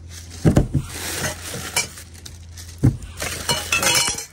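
Crumpled packing paper rustling as things are moved about in a cardboard box, with glasses and copper mugs clinking and knocking together. The sharpest knocks come about half a second in and again near three seconds.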